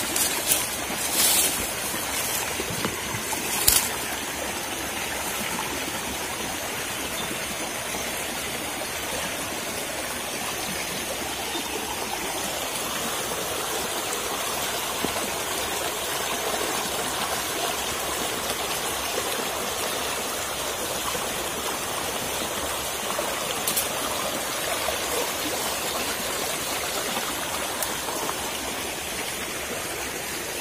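A small stream running over rocks, a steady rush of water throughout. A few short clicks sound in the first four seconds.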